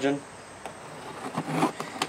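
Utility knife slitting the packing tape on a small cardboard box, a faint scraping and cutting sound.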